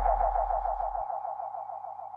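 Electronic hip-hop track's outro: a lone, rapidly pulsing synthesizer tone fading out. A low bass tone under it cuts off about halfway through.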